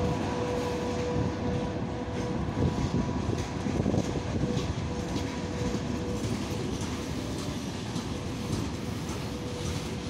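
Freight train wagons rolling over the rails with a steady rumble and clatter of wheels, over a faint, steady, high whine, as the train pulls out and moves off.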